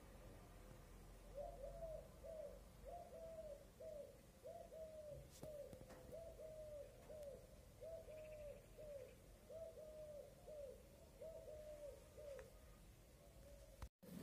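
Common cuckoo calling at a distance: a long, regular run of low, repeated cuckoo calls that starts about a second and a half in and stops shortly before the end.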